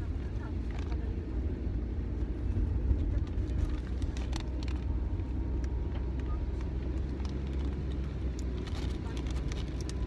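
Steady low rumble of a car's engine and road noise heard inside the cabin, with a few faint light clicks.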